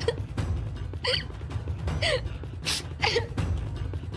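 A woman sobbing: short, broken crying sounds about a second apart, with a sharp gasping breath between them, over a low, steady background score.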